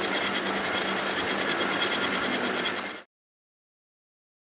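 A steady mechanical whirring rattle with a fast, even ticking over a low hum, cut off abruptly about three seconds in.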